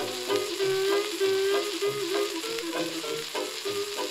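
A 1928 hot jazz dance orchestra playing from a 78 rpm shellac record on a turntable: held notes over a steady rhythm, under heavy crackle and hiss of surface noise.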